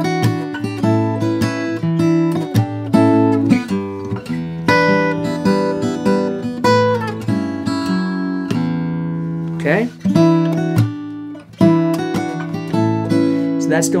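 Steel-string acoustic guitar played fingerstyle: a chord-melody passage with bass notes, chords and a melody line plucked together, with two brief breaks about two-thirds of the way through.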